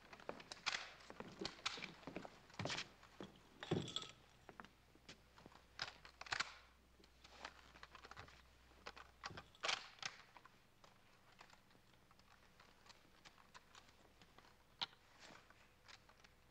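Faint, irregular metallic clicks and clacks of rifle parts being handled and fitted together as the rifles are assembled, dense for the first ten seconds and sparser after.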